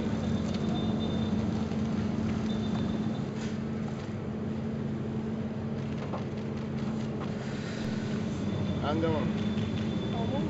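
A steady low engine hum, dropping somewhat in level about three seconds in, with people's voices in the background.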